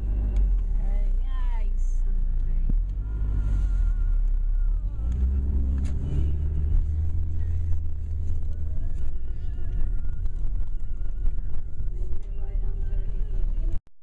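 Steady low road rumble of a moving car, heard from inside the cabin, with faint voices in the background.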